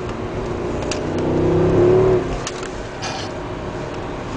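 The Mercedes CLS 63 AMG's V8 heard from inside the cabin, rising in pitch under acceleration to its loudest about two seconds in, then falling away abruptly, over steady road and tyre noise.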